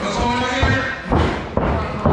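Heavy thuds of wrestlers' bodies hitting a backyard wrestling ring, several in quick succession, the loudest a little past halfway and again near the end.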